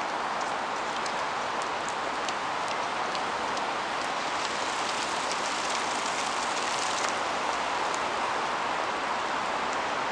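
Steady traffic noise from a congested city street, with faint, irregular high ticks scattered through it.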